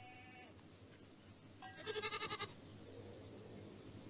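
A goat bleating: a faint short bleat at the start, then one louder, quavering bleat about two seconds in.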